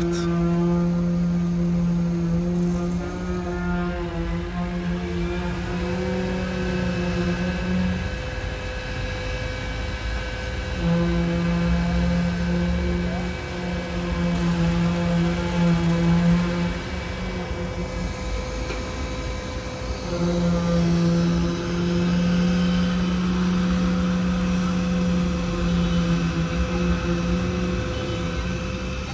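Vibratory plate compactors working freshly laid gravel: a steady, loud machine hum that cuts out and starts again twice, over a low rumble.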